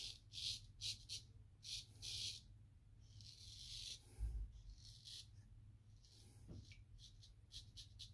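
Straight razor strokes on a lathered neck: a series of short, faint scraping rasps as the edge cuts through the stubble.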